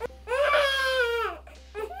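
A newborn baby crying: one wail about a second long that drops in pitch as it ends.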